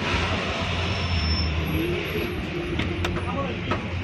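SUV tailgate closing, with a sharp click about three seconds in as it latches, over a steady low rumble.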